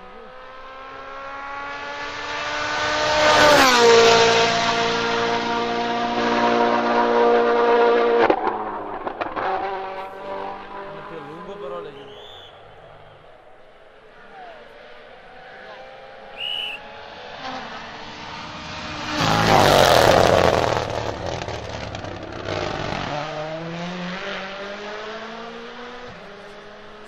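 WRC Rally1 hybrid cars with turbocharged four-cylinder engines passing at full throttle. The first engine note rises, drops in pitch as the car goes by about 3–4 s in, then holds high revs as it pulls away until a sudden cut. About 20 s in a second car passes with a loud rush of noise, and another car is heard accelerating toward the microphone near the end.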